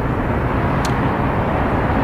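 Steady urban traffic noise, a dense even rumble with no distinct events. A single short click comes through a little less than a second in.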